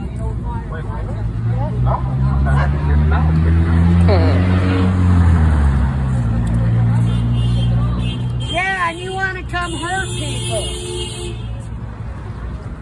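A vehicle engine running close by, its pitch stepping up and down for several seconds, followed by shouting voices near the end.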